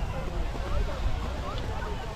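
Faint, scattered voices of people on a busy ski slope over a steady low rumble of skis sliding on snow and wind on the microphone.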